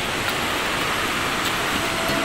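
Steady rushing noise of a waterfall, an even unbroken roar.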